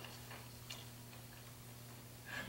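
Quiet room tone with a steady low electrical hum and a few faint ticks.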